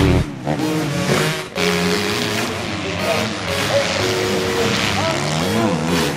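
Motocross bike engines revving, their pitch rising and falling again and again as the throttle is worked.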